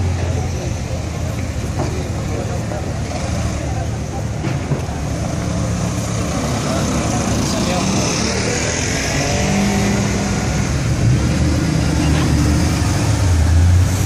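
Supercar engines on a street. A Ferrari F12berlinetta's V12 is loud as it pulls away at the start, then fades. Engine sound carries on through the middle, and a deep engine rumble builds again near the end.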